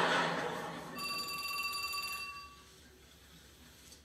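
Studio audience laughter dying away, then a telephone ringing once for about a second and a half, a fast-fluttering high ring.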